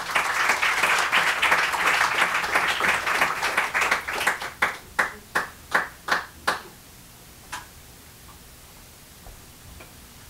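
Audience applauding, dying away over a few seconds into scattered single claps, with one last clap before the room goes quiet.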